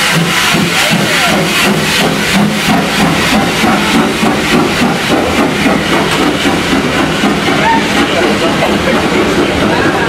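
Steam locomotive pulling away with its train: quick rhythmic exhaust chuffs over a steady hiss of escaping steam, the beats growing less distinct in the second half as the coaches roll by.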